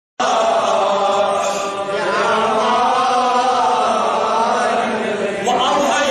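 A man's voice chanting in long, held melodic phrases into a microphone, with a rising glide into a new phrase near the end.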